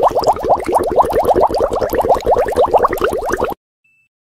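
Electronic sci-fi sound effect: a rapid train of short rising chirps, about ten a second, that cuts off abruptly about three and a half seconds in.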